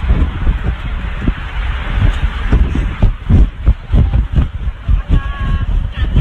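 Wind buffeting a phone's microphone: a loud, gusty rumbling rush. A short steady tone sounds about five seconds in.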